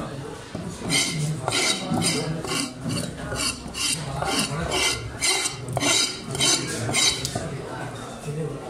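A cleaver blade scraping the scales off a large fish on a wooden chopping block: repeated rasping strokes, about two or three a second.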